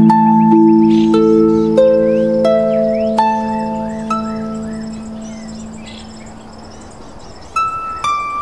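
Slow, gentle solo piano music: single high notes struck over a held low note, ringing out and dying away over several seconds, with a new phrase starting near the end.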